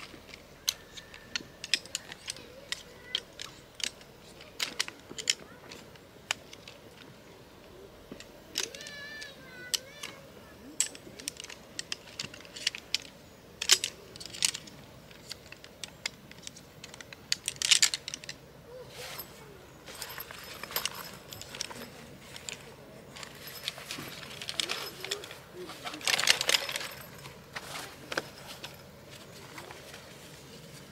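Clicks and light metallic rattling from the aluminium pole frame of a compact folding camp chair as it is taken apart and folded. A spell of rustling comes near the end as the fabric is handled for packing.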